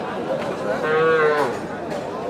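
A calf mooing once, a short held bawl about a second in, over the chatter of a crowd.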